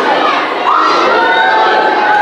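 A crowd of children shouting and cheering together, with long, high, drawn-out shouts that get louder a little over half a second in.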